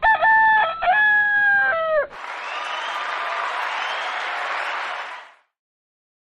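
A rooster crowing once as a sound effect, about two seconds of pitched calls that drop away at the end. It is followed by about three seconds of applause that fades out.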